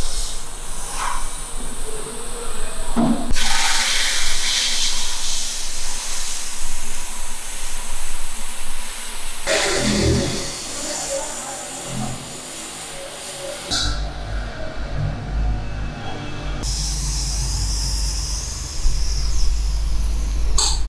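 Sandblast gun in a blast cabinet firing grit at a small round metal engine cover: a loud, steady hiss of air and abrasive that changes abruptly several times. In the last few seconds a paint spray gun hisses over a low hum as black paint goes on.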